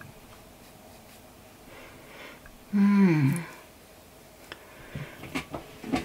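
Soft sniffing breaths, then a woman's short hummed 'mmm' about three seconds in, falling in pitch, as she smells freshly sprayed perfume. A few light clicks near the end.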